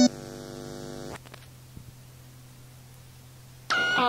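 Experimental cassette recording in a gap between two short tracks. A sustained electronic tone cuts off suddenly at the start and a fainter tone fades out about a second in. That leaves a steady low mains hum with a few faint clicks, until a loud new pitched sound starts abruptly near the end.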